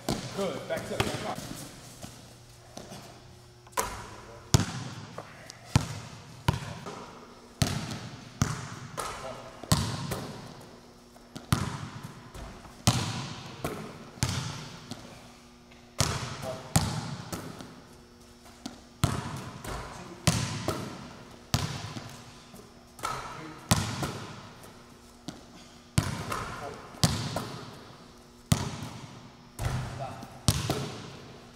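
Basketballs bouncing and hitting the rim and backboard again and again, sharp thuds about once a second, each echoing in a large metal-roofed gym.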